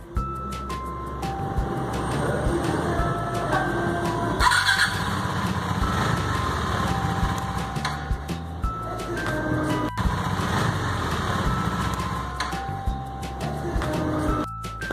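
Background music over a KTM Duke 390's single-cylinder engine running, heard as a steady low rumble with a brief louder surge about four and a half seconds in.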